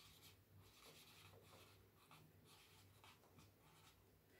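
Very faint strokes of a marker pen writing on a whiteboard, short rubs scattered through, over a low steady hum.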